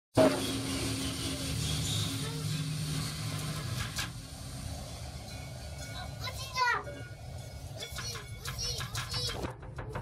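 Cable-car gondola running along its cable, heard from inside the cabin: a steady mechanical hum and rumble, with a single click about four seconds in. A small child's brief squeal about six and a half seconds in and short babbling near the end.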